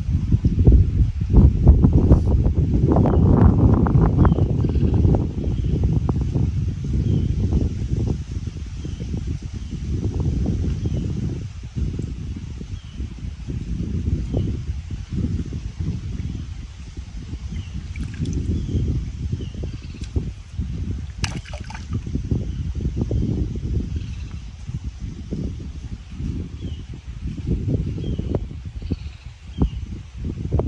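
River water sloshing and lapping around a person sitting waist-deep in a river, mixed with an uneven low rumble of wind on the microphone.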